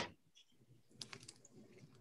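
Faint computer-keyboard typing: a quick run of light key clicks in the second half, against near silence.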